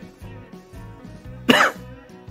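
A man coughs once, loudly and briefly, about one and a half seconds in, over background music.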